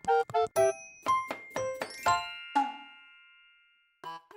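Short, cheerful intro jingle: a quick run of short pitched notes ending about two seconds in on a chord that rings out and fades away.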